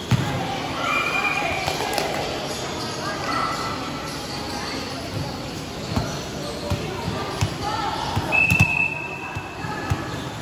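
A volleyball bounced several times on a concrete gym floor, a thud at a time, as the server gets ready to serve. Girls' voices call and shout in the echoing hall around it.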